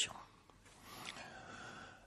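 A man's faint breath drawn in through the mouth between sentences, starting about half a second in and lasting about a second and a half.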